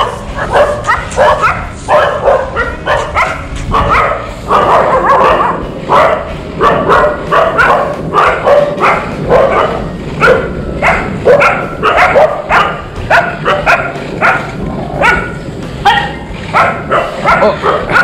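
Street dogs barking over and over, about two or three barks a second, without let-up. Beneath them runs the steady rumble of longboard wheels rolling on rough asphalt.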